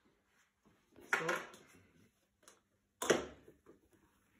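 Two sharp knocks about two seconds apart, the second louder, each fading within half a second: gear being handled and put down on a hard worktop.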